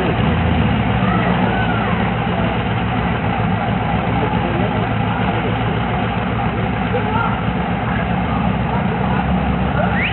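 Car engines idling steadily at a drag strip's starting line, a constant low rumble with no revving or launch.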